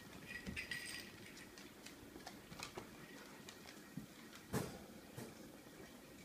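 Faint scattered clicks and taps of a dog's claws on a hardwood floor, with one louder knock about four and a half seconds in.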